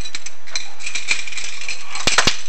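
Chimney inspection camera rattling and scraping against the masonry inside a flue as it is moved, a steady run of small clicks and ticks.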